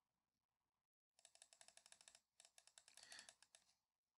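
Near silence, with faint rapid clicking of a computer keyboard starting about a second in and stopping just before the end.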